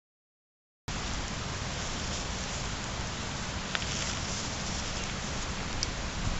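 Silence, then about a second in a steady hiss with a low rumble cuts in abruptly: outdoor background noise on a camera microphone, with a couple of faint clicks.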